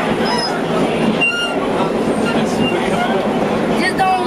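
Vintage R1/R9 subway cars running into an underground station: a loud, steady rumble of wheels on rail, with a brief high squeal about a second in.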